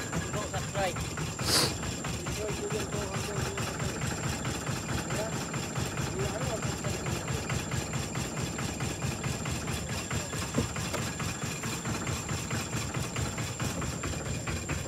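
A small engine idling steadily with an even pulsing beat, under a thin continuous high-pitched tone. A brief sharp rushing noise is heard about one and a half seconds in.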